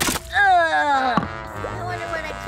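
A short splat, then a woman's long falling cry of disgust as slime is poured over her head, followed by background music.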